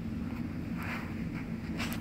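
A steady low rumble with faint rustle from a hand-held phone microphone being carried while walking.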